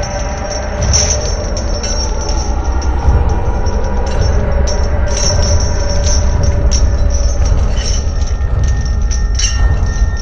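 Horror film sound design: a loud, low rumbling drone with sustained high screeching tones and scattered sharp clicks, swelling slightly in the first few seconds.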